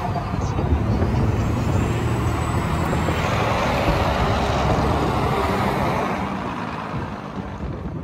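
Semi-truck running with steady road and traffic noise and a low engine hum, fading out over the last two seconds.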